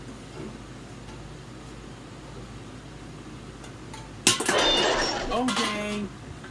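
Low steady background noise, then about four seconds in a sudden loud burst of noise, followed by a voice calling out.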